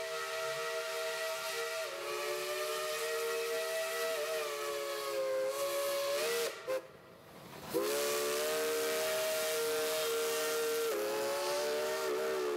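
Steam locomotive whistle blowing several tones at once, in two long blasts with a short break about halfway through. The pitch wavers and dips during the blasts, over a light hiss of steam.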